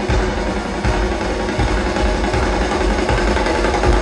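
Live rock band playing a loud, drum-heavy instrumental passage: kit drums with repeated bass drum hits alongside strapped-on marching drums, recorded from within the arena crowd.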